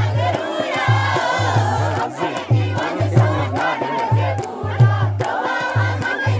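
A Paddari dance song with a heavy bass beat about twice a second, and a crowd of young people shouting and singing along over it.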